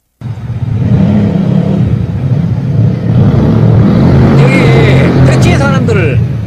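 Motorcycle engine noise rising from the street to a middle floor of a high-rise apartment block, a steady, loud drone that cuts in suddenly and echoes off the tall buildings. It is a noise the machine does not make when new.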